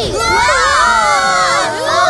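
Several high-pitched cartoon voices screaming together in fright, loud and drawn out, with a short break near the end before they start again.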